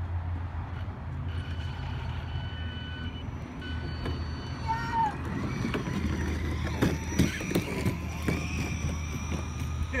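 Electric RC short-course truck (SC10 4x4 with a Castle 3800kV brushless motor and Mamba Max Pro controller) approaching as it tows a loaded plastic wagon: a faint rising motor whine over the knocking and rattling of the wagon's hard wheels on concrete, growing louder in the second half. A child laughs at the very end.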